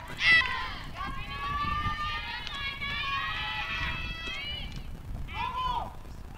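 Several high voices calling out and cheering at once at a softball field, overlapping for a few seconds in the middle, with a single shout near the start and another near the end.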